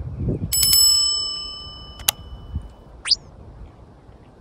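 A bright bell ding, the notification-bell sound effect of a subscribe-button animation, struck about half a second in and ringing out over about two seconds. A sharp click follows at about two seconds, then a short rising chirp about three seconds in.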